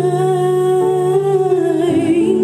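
A woman singing one long held note with a slight vibrato, live and amplified, over sustained band accompaniment. The low accompanying note changes near the end.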